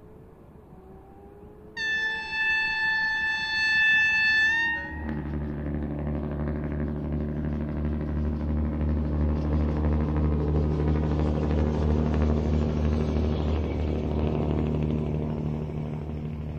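Heritage DB Schienenbus railbus: a faint engine note rising in pitch, then one high horn blast of about three seconds. After the horn, the railbus's underfloor diesel engine runs with a steady deep drone as it approaches.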